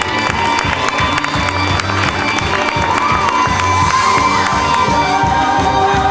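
Audience cheering, with children shouting, over music as a dance number ends and the dancers take their bow; near the end held musical notes come through more clearly.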